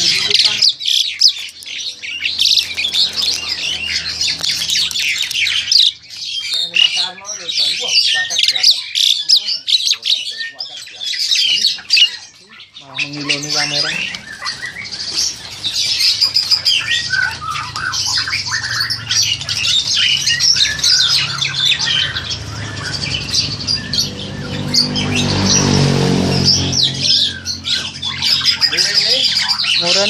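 Black-collared starling (Jalak Hongkong) calling continuously, a dense chatter of harsh squawks and squeaky notes, with a short lull about twelve seconds in.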